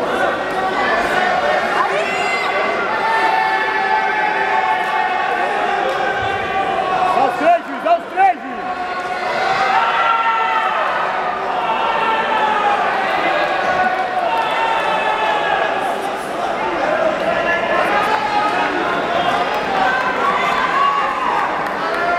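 Overlapping voices of spectators and coaches talking and shouting in a large gymnasium hall around a jiu-jitsu match, with a few short, loud shouts about a third of the way in.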